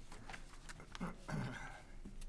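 Room tone of a meeting room with papers being handled, scattered light ticks and rustles. Two short, low human vocal sounds come about a second in, the loudest thing heard.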